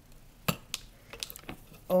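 Paracord being pulled through while a cobra knot is tied: soft handling noise with a few small clicks and taps. The sharpest click comes about half a second in.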